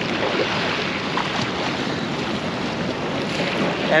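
Steady wash of sea water against jetty rocks mixed with wind buffeting the microphone, an even hiss with no distinct strokes.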